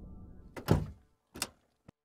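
Wooden door being opened: a latch clack about half a second in, then a softer thunk and a small click near the end.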